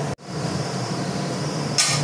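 A steady hiss, then near the end a brief bright metallic clatter as an aluminium lid is lifted off a clay cooking pot.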